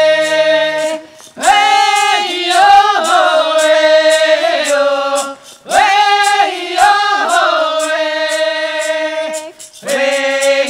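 A group of men and women singing a berry-picking song together in unison without instruments. The song moves in long held phrases, with a short pause for breath about every four seconds.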